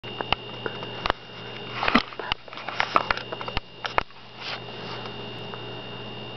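Newborn puppies suckling at their mother, with irregular wet sucking clicks and snuffling through the first four seconds, quieter after that, over a steady hum.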